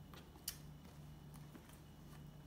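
Near silence with a low steady hum and faint handling of a leather jewelry case and a necklace chain, with one sharp click about a quarter of the way in.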